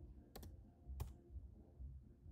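Keystrokes on a computer keyboard: a quick double click, then a single key about half a second later, typing 'y' and Enter to confirm a software install, over a faint low hum.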